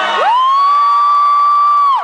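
An audience member's long, high-pitched scream: it rises sharply at the start, holds on one pitch for about a second and a half, then drops away near the end, over faint crowd noise.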